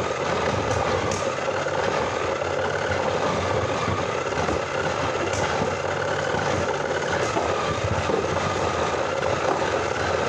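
Two Beyblade Burst spinning tops whirring and scraping steadily across a clear plastic stadium floor, with a few faint clicks.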